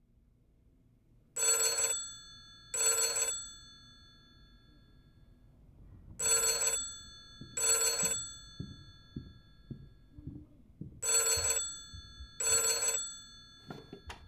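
An old desk telephone's bell ringing in three double rings, about five seconds apart, each ring leaving a metallic tone hanging after it. Faint low knocks come between the later rings, and a sharper knock comes near the end.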